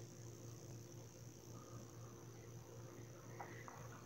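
Near silence: faint room tone with a steady low hum and a thin, steady high-pitched whine.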